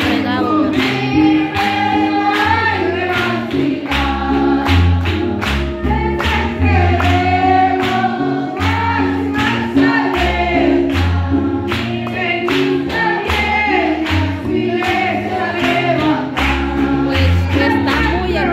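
Live gospel music in a church: a woman sings lead through the PA with the congregation singing along, over an amplified band with a bass line and a steady drum beat.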